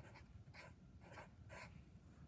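Marker pen writing on paper: a few faint, short scratching strokes as a word is written out.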